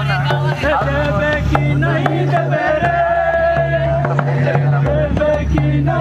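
Adivasi folk music: singing voices over a steady beat on a madal (mandar), the two-headed barrel hand drum.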